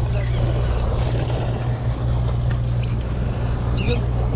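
Fishing boat's engine running with a steady low hum, under a wash of water and wind noise.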